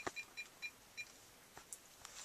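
Cell phone keypad beeping as a number is dialed: a quick run of short, same-pitched key-press beeps that stops about a second in.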